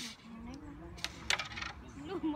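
Carrom pieces on a wooden carrom board clicking against each other: two sharp clicks about a quarter second apart, a little past the middle.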